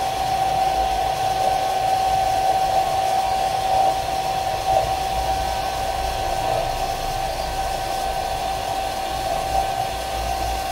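Hair dryer blowing steadily on high, a constant rush of air with a steady whine, heating a phone's back glass to loosen its adhesive.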